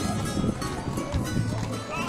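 Music playing, with horses' hooves clip-clopping on asphalt as horse-drawn carriages pass.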